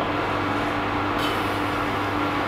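A steady low machine hum with a constant tone, and a faint hiss that grows slightly just over halfway through.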